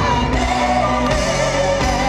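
Live indie pop band playing loud, with singing over guitar, keyboards and a steady low end, recorded from within a festival crowd.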